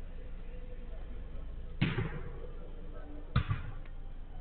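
Two sharp thuds of a football being played, about a second and a half apart, each followed by a brief rebound.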